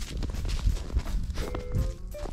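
Footsteps crunching in snow over a low rumble, with music playing faintly behind and a few held notes near the end.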